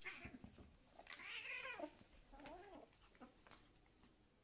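Kitten meowing faintly: a longer call about a second in, then a shorter, lower one, with a few light scuffles as two kittens tussle on a carpet.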